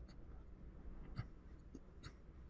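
Faint scratching of a fine metal sculpting tool on modelling clay, with a few small clicks, the clearest a little past halfway.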